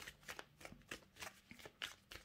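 A tarot deck being shuffled by hand, the cards giving a quiet run of short soft slaps, about three or four a second.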